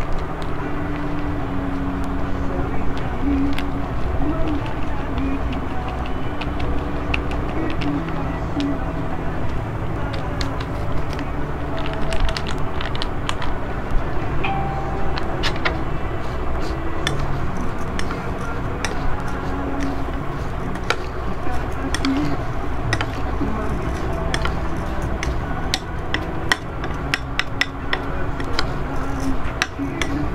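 A metal spoon stirring uncooked basmati rice and Milo powder in a ceramic bowl: scrapes and sharp clinks against the bowl, more frequent in the second half. Underneath runs a steady low background din with muffled voices.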